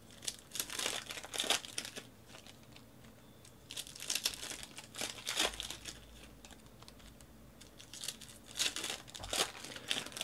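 Foil trading-card pack wrappers crinkling and tearing as packs are opened by hand, in three spells of rustling with quieter gaps between.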